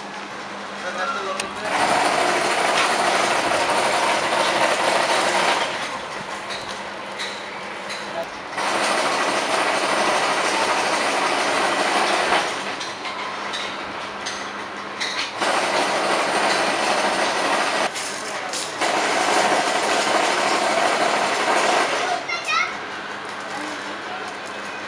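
Chain-link mesh machine running in repeated spells of about three to four seconds, a loud rattling whirr as it winds wire into spirals, with quieter gaps of workshop noise between runs.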